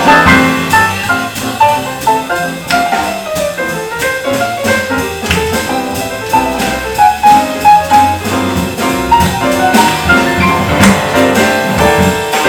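Live jazz combo playing a quick run of melody notes over bass and drum kit, with cymbal and drum strokes.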